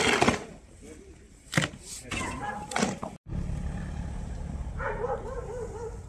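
Snow shovel scraping and striking packed snow in several quick strokes, the loudest right at the start. After a break, a steady low rumble follows, with a short wavering whine near the end.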